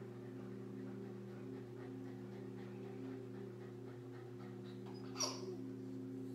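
A dog gives one short, high whimper that slides down in pitch about five seconds in, over a steady low hum from the swim pool's pump.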